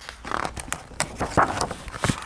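Pages of a hardcover picture book being handled and turned: paper rustling and scraping, with several sharp ticks.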